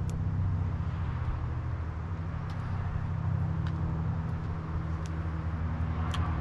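Steady low droning hum of a motor running in the background, with a few faint ticks scattered through it.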